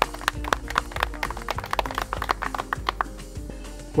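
A small group of people clapping their hands in irregular, scattered claps that thin out near the end.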